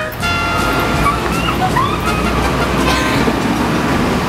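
Stretch Hummer limousine's engine running as it pulls past, a steady low rumble.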